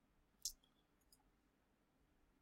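One sharp computer mouse click about half a second in, then a much fainter tick a little after a second, over near silence.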